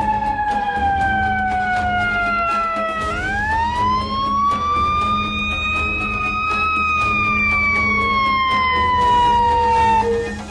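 Fire engine siren sounding a slow wail: the pitch falls for about three seconds, turns sharply and climbs, then slowly falls again toward the end.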